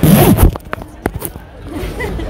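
Zipper on a backpack being pulled fast in the first half second, followed by a few short clicks and rustles from handling the bag.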